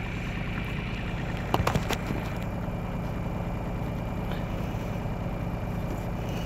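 An engine running steadily, with a few sharp clicks about one and a half to two seconds in.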